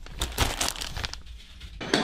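Rustling and crinkling as a plastic sports-drink bottle is pushed down into a soft cooler bag among drink cans, with a run of small crackles and knocks that stops near the end.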